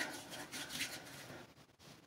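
Faint rustling of hands working hair styling product through short hair, with a brief dropout near the end.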